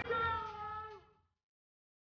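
A high-pitched voice making a drawn-out call that falls slightly in pitch, over faint crowd background. A little over a second in, the audio cuts off abruptly to dead silence.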